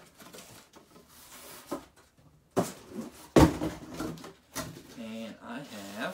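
Cardboard boxes being handled and lifted out of a larger cardboard shipping box: scraping and rubbing, with a few sharp knocks, the loudest about three and a half seconds in.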